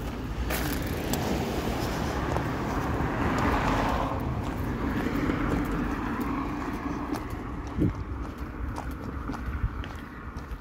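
A car passes on the street, its tyre and engine noise swelling over the first few seconds and then fading. Footsteps tap lightly and regularly on the pavement.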